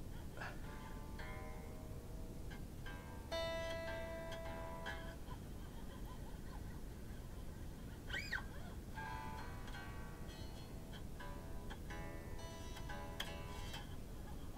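Strings of a 1967 Gibson ES-335 electric guitar plucked softly during restringing. A few faint notes ring at a time, one held for a couple of seconds, with small clicks of handling between them.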